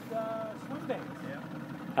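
Steady low hum of a boat motor, with a brief faint voice near the start.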